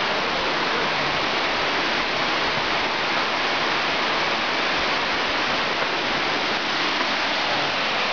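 Flowing water rushing steadily in an even hiss, with no change in level.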